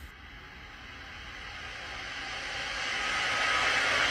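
A rushing, hiss-like noise that swells steadily louder throughout, a rising build-up.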